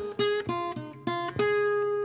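Acoustic blues guitar playing a short run of picked single notes between sung lines, the last note ringing on for almost a second.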